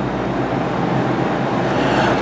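Steady background hiss with a low hum, with no speech over it.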